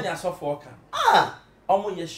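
Conversational speech, with a short vocal exclamation whose pitch falls steeply from high to low about a second in.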